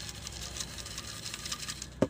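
A hand rummaging through folded paper slips in a glass jar: a steady run of fine crinkling and rattling ticks, with one sharper knock at the very end.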